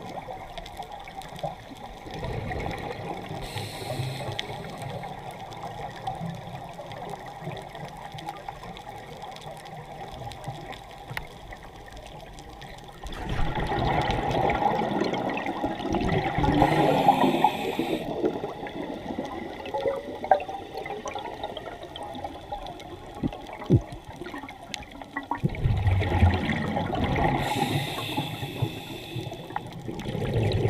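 Scuba diver's regulator underwater: exhaled air bubbling and gurgling in long bursts, loudest about halfway through and again near the end, with short hisses of air between.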